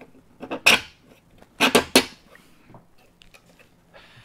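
Knocks and clattering scrapes of a blue square connector block being fitted and locked down into a workbench's dog holes with a bench-dog knob. They come in two short bursts, about half a second in and again around a second and a half in.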